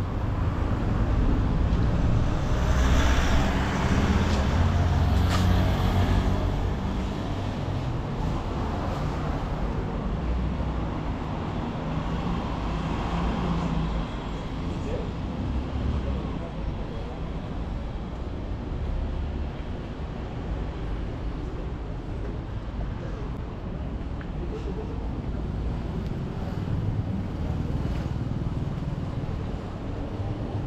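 City street traffic: a steady low rumble of passing cars and trucks, louder for roughly the first six seconds and then even.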